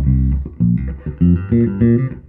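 Electric bass played through a DSM & Humboldt Simplifier Bass Station preamp and cabinet simulator: a quick run of plucked notes, several a second.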